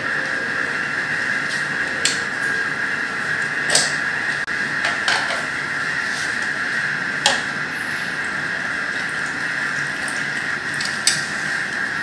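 Scattered plastic clicks and knocks, about half a dozen spread through, with some liquid sounds, as a vertical gel electrophoresis tank is switched off and opened and the gel cassette is lifted out of its running buffer. A steady high background hiss runs underneath.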